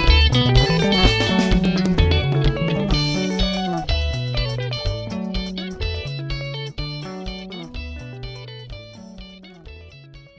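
Sungura band instrumental without vocals: bright, interlocking electric guitar lines over a pulsing bass guitar and drums, fading out steadily to the end of the song.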